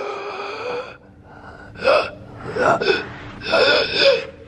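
A person gasping and groaning in distress: a drawn-out groan, then three short, sharp gasps about a second apart.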